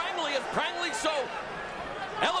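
Several raised voices shouting over one another above steady background noise.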